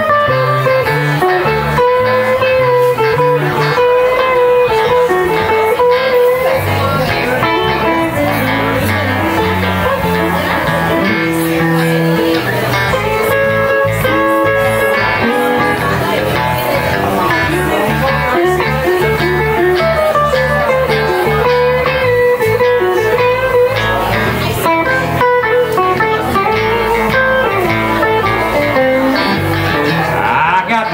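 Live blues band playing an instrumental break: a lead electric guitar solos with bent, wavering notes over a second electric guitar and electric bass.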